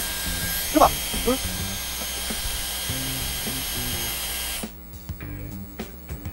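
Dyson Airwrap hair styler running, its curling barrel blowing air with a steady high motor whine over a rushing airflow. The sound cuts off about four and a half seconds in.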